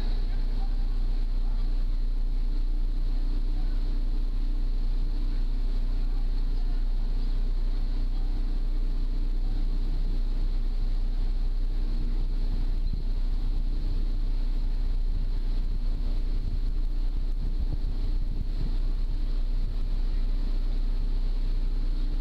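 A ferry's engine running steadily underway, a constant low drone with a steady hum over it, and wind buffeting the microphone.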